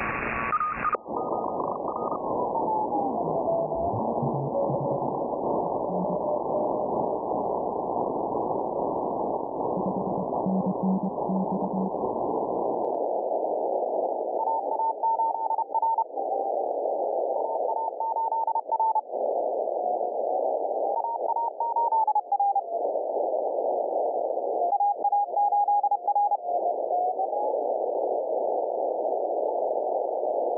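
Morse code (CW) signals heard in receiver hiss, demodulated by a software-defined radio's DSP filter. The beeping tone slides in pitch as the receiver is tuned, then keys on and off in Morse. The hiss narrows in two steps, about a second in and again near the middle, as the filter is switched from the wide sideband setting to a narrow CW filter.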